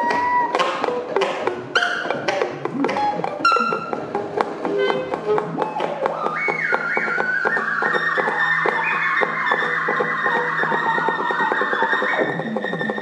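Free-improvised live music with a tenor saxophone. The first half is full of sharp clicks and taps. From about six seconds in, held high tones step up and down over a steady low hum.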